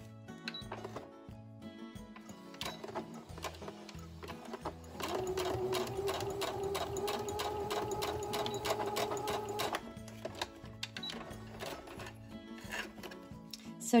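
Electric sewing machine stitching a short seam across the end of a folded fabric strip. It runs steadily for about five seconds, starting about five seconds in, over background music.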